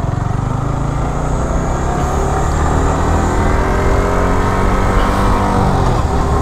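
Sport motorcycle's engine running under way, its pitch climbing slowly and steadily as the bike gains speed.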